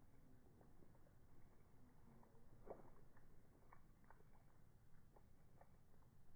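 Near silence: faint background hiss with a few soft, short ticks, one a little under three seconds in.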